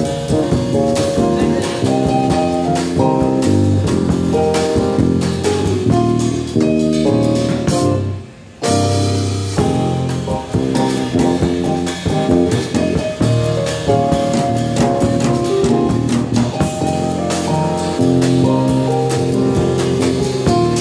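Live jazz trio of electric bass, drum kit and keyboard playing. The band drops out for a moment about eight seconds in, then comes straight back in together.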